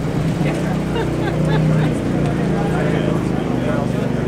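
Crowd of people talking at once, with voices overlapping, over a steady low hum.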